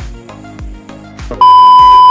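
Background music with a steady beat of about two hits a second. About one and a half seconds in, a loud, steady high beep cuts in over it: the test tone that goes with a TV colour-bars screen, used as an edit transition.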